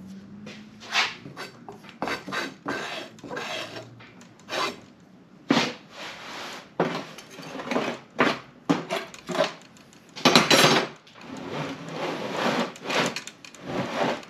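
Casting sand being worked into a wooden moulding flask and scraped level across its top: irregular gritty scrapes and rubs, the loudest a long scrape about ten seconds in.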